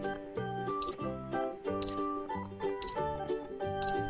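Countdown-timer sound effect ticking once a second, four short sharp ticks, over light background music.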